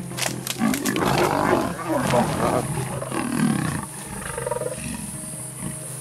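Lionesses and a leopard snarling and growling in a fight as the pride pins the leopard down. The loudest, densest snarling comes in the first four seconds, then it dies down.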